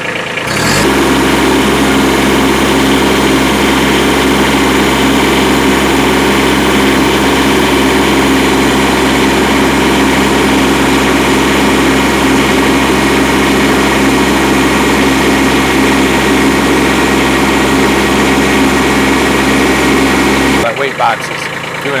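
Kubota B2301 compact tractor's three-cylinder diesel engine, throttled up about a second in and held at a steady high speed while its LA435 front loader hydraulics lift a pallet of about 926 pounds, then throttled back down near the end.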